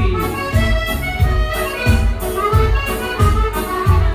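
Chromatic button accordion (an Elkavox) playing a dance tune, held melody notes over a steady low beat of about three beats every two seconds.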